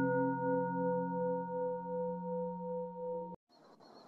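A Buddhist bowl bell ringing on after a single strike: several steady tones, the low one pulsing in a slow wobble. The ring cuts off abruptly about three and a half seconds in, leaving faint high tones.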